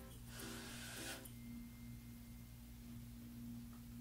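Faint steady hum with one even tone over a low drone, and a brief soft hiss in the first second.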